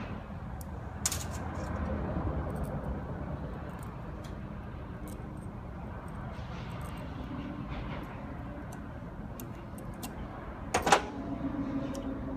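Snap ring pliers and a small steel snap ring clicking and tinkling in the hands as the ring is fitted, over a steady low shop hum; one sharper metal click comes near the end.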